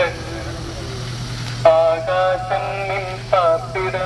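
A sung melody with long held, slightly wavering notes that picks up again about one and a half seconds in after a pause, over a low steady hum from a slowly moving vehicle's engine.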